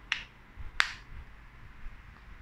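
Two sharp plastic clicks about two-thirds of a second apart, the second louder, as a Realme Buds Air earbud is put back into its plastic charging case.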